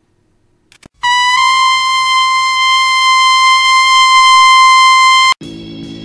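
A loud, steady electronic tone with a buzzy edge comes in about a second in and holds one pitch for about four seconds, with a small step up just after it starts, then cuts off abruptly. Music begins right after it, near the end.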